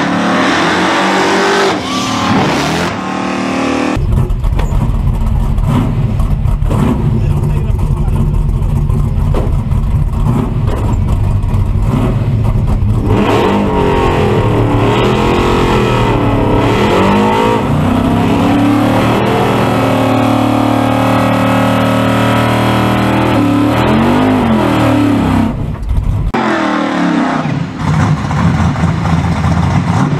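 Drag-racing car's V8 engine running hard at high revs, its pitch rising and falling repeatedly; the sound starts abruptly a few seconds in and cuts off near the end. Spectator voices can be heard around it.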